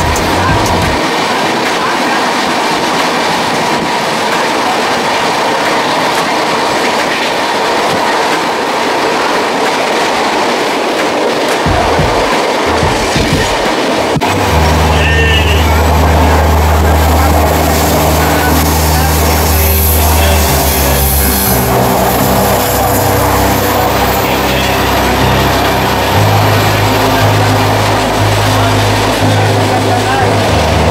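Moving train heard from a carriage window: a steady rush of wheel and rail noise. About halfway through, a low steady hum joins it and holds, shifting in pitch in steps.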